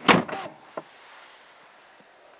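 An Aston Martin Vanquish's door being pulled shut from inside: a short loud thud with a second knock right after it, then a light click a little later.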